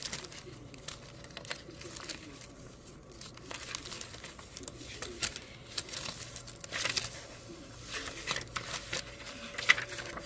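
Paper rustling and crinkling as the pages of a handmade junk journal are turned and handled, with many short, sharp crackles and a louder one near the end.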